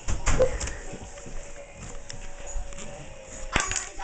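Rustling and knocks of people moving and the camera being handled, a short squeak about half a second in, and a sharp knock near the end.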